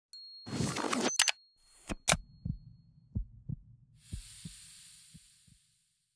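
Intro sound effects: a short high beep, a whoosh with sharp clicks, then low heartbeat-like double thumps about once a second over a low rumble. A high hiss swells and fades out near the end.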